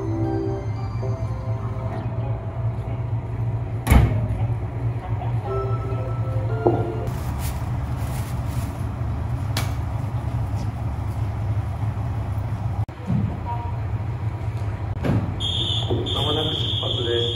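KiHa 54 diesel railcar's engine idling with a steady low drone, and a sharp knock about four seconds in.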